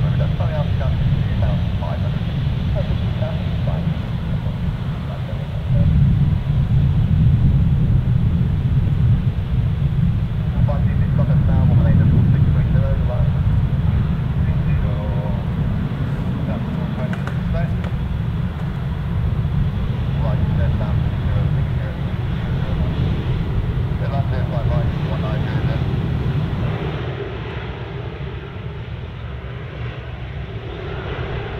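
Airbus A380-841's four Rolls-Royce Trent 970 turbofans at taxi power, a steady low rumble that swells about six seconds in and eases off near the end.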